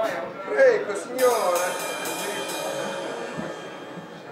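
A voice in the room, then about five quick struck hits from the band's stage instruments, a few tenths of a second apart, ringing on and fading, as the band noodles between songs.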